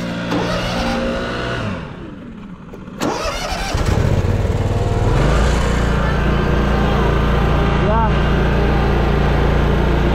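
Riding mower's engine: it falls away a couple of seconds in, a sharp clunk comes at about three seconds, and the engine then comes back loud. Its pitch climbs as it is throttled up, and it then runs steadily at high speed.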